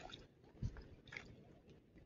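Faint crunching and scraping on loose dead coral rubble as it is handled: a sharp click right at the start, then a couple of soft crunches.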